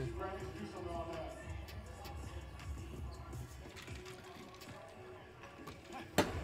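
Faint broadcast audio from a basketball game: a voice and background music, low under the level of the reactors' talk.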